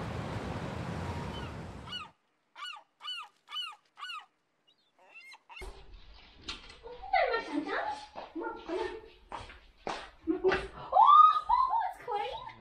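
City traffic noise for the first two seconds, then a quick run of about six short, high yips from a small dog, followed by a woman talking with more dog yelps.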